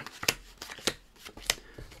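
Playing cards being dealt and stacked into piles on a cloth mat, each card or packet landing with a short, sharp snap, roughly every half second.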